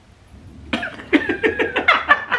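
A woman coughing and laughing in quick bursts, starting under a second in, with others laughing along.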